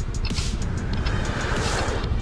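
City road traffic around a stopped scooter: a steady wash of vehicle noise, swelling in the second half as a vehicle goes by.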